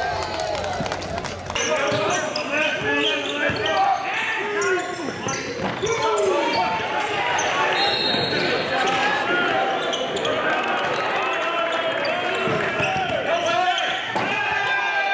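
Live basketball game sound in a gym: a ball dribbled on a hardwood court, sneakers squeaking as players cut, and indistinct voices of players and spectators echoing in the hall.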